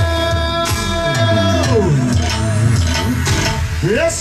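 Live band dance music, with no singing, led by an electronic keyboard with bass and percussion. A held chord bends down in pitch about two seconds in, and a quick upward bend comes near the end.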